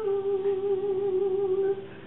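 Female vocalist holding one long sung note with vibrato, which fades out near the end.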